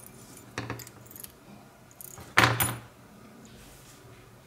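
Small brass padlock cylinder parts and a key clinking in the hands: a few light metallic clicks, then a louder sharp clink with a brief ring a little over two seconds in.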